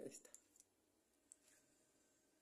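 Near silence broken by a few faint clicks in the first half second and one more about a second later: a small plastic-and-metal Hot Wheels toy car being handled and turned in the fingers.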